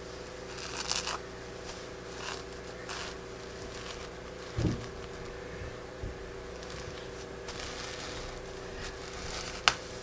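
Pencil scratching across hand-dyed fabric as shapes are traced onto it, with the cloth rustling under the hands: faint, intermittent strokes. A single sharp click near the end.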